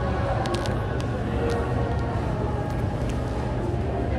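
A steady low background rumble with a few faint clicks and no speech.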